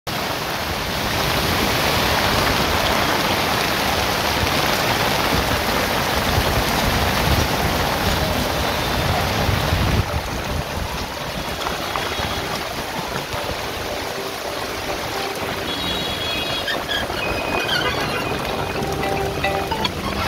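Heavy rain pouring onto a flooded road and the canopy of a moving open-sided three-wheeler, heard from inside it as a steady dense hiss. It is loudest in the first half and a little quieter from about halfway.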